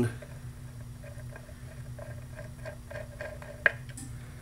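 A cabinet-door knob being threaded onto its screw by hand: faint small ticks and scrapes as it turns, with one sharp click near the end.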